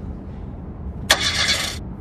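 A car engine is cranked briefly, with a click and a short rasping burst about a second in, over a low steady rumble in the cabin. It does not catch: the car won't start.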